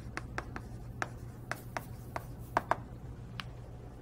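Chalk tapping and scraping on a blackboard as words are written: a string of irregular sharp clicks, the strongest a close pair about two and a half seconds in, over a low steady room hum.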